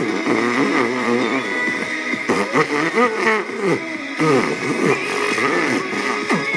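Vocal beatboxing right at the microphone, buzzing lip and mouth sounds that glide up and down in pitch, over music playing from a radio.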